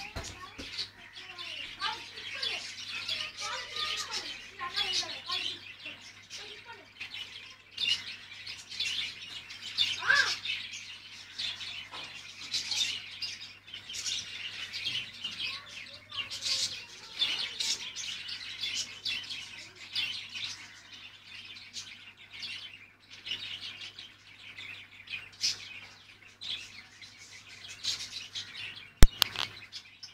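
Small birds chirping rapidly and continuously, with a steady low hum underneath and one sharp click about a second before the end.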